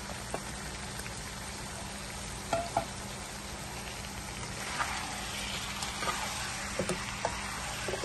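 Ground beef keema with potato cubes and coriander leaves frying in a nonstick pan, with a steady sizzle. A spatula clicks and scrapes against the pan now and then as the mix is stirred. The sizzle grows a little louder about halfway through.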